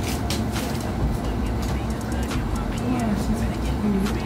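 Plastic packaging crinkling and rustling in short bursts as a garment is pulled out and unfolded, over a steady low hum.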